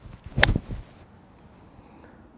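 Golf iron striking the ball off fairway turf in one sharp hit about half a second in, followed by a duller, softer sound. It is a thick (fat) contact: the club catches turf behind the ball.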